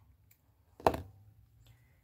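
A single snip of small embroidery scissors cutting through an acrylic yarn tail: one short, sharp click about a second in.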